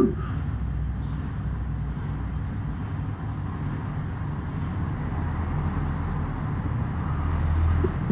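A low, steady rumble of background noise that swells slightly near the end.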